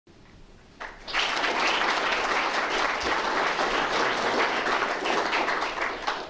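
Audience applauding, starting about a second in and easing off near the end.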